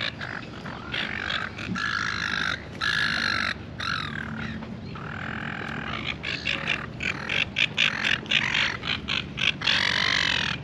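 Silver gulls calling: harsh, repeated squawks, turning into a rapid run of short calls in the second half.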